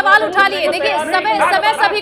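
Several people talking over one another at once: overlapping, argumentative voices with no single clear speaker.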